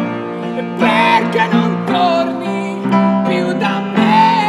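Live acoustic song: a man singing short phrases over sustained piano chords.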